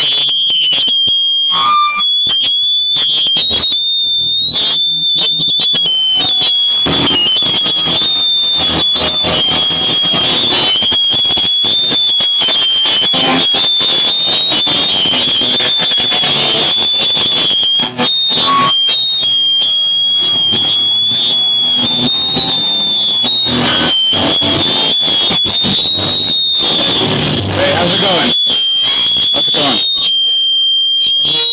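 A loud live band of electric guitar, bass guitar and drums playing, with shouted vocals. A high-pitched feedback squeal is held over the music for most of the time.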